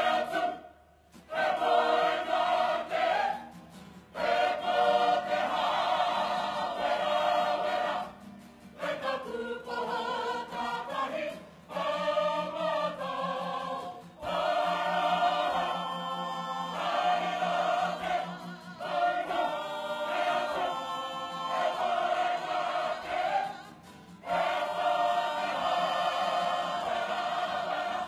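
Kapa haka group of men and women singing a waiata tira, a choral piece in te reo Māori, in full voice, in long phrases with short breaks between them.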